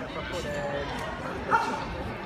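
Hall background of a large indoor sports hall: a low murmur of distant voices, with a faint call early on and a short, louder call about a second and a half in.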